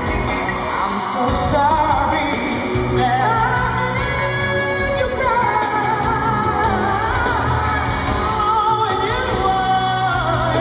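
A male pop singer singing live into a microphone over band accompaniment, with long held notes that waver in pitch.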